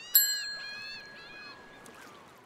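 Like-and-subscribe end-screen sound effects: a few quick pitch-bending blips, and a bright bell ding just after the start that rings for about a second and a half.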